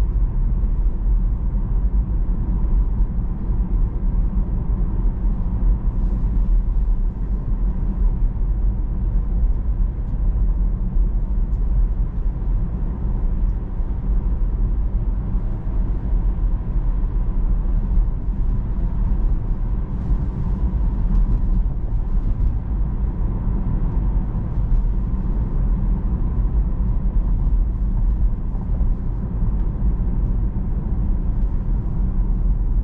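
Steady low road and tyre rumble heard inside the cabin of an electric Tesla cruising on city streets at about 30 to 35 mph.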